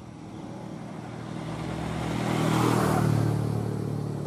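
A motor vehicle passing close by, its engine growing louder over about three seconds, then easing off near the end.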